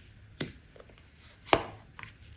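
Tarot cards being set down on a tabletop, each landing with a sharp tap: two taps about a second apart, the second louder.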